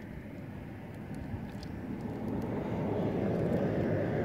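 A low engine rumble that grows steadily louder, as of a motor vehicle approaching, with a few faint ticks.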